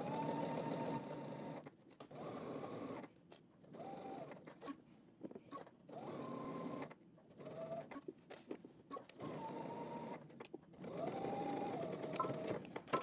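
Domestic electric sewing machine edge-stitching a patch pocket onto lightweight woven fabric. It runs in about seven or eight short bursts with brief stops between them, a steady motor whine under the needle's stitching.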